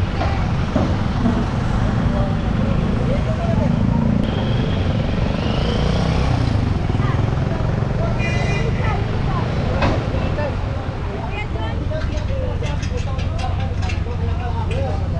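Motor vehicles running at idle under steady street traffic noise, with people's voices mixed in. A brief high-pitched tone sounds a little past the middle, and a sharp click comes soon after.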